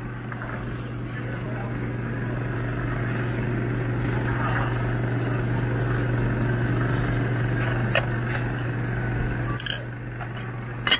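Busy restaurant room noise: a steady low hum under indistinct chatter, with a couple of light clinks near the end from a metal spoon scooping chopped green onions out of a steel condiment bowl.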